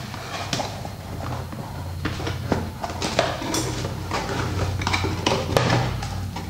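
A cardboard product box being opened by hand: the lid and flaps sliding and scraping, with scattered light knocks and rustles over a low steady hum.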